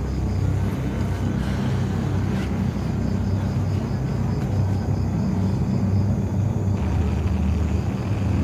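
A steady low rumble, with a faint, evenly pulsing high tone in the first few seconds.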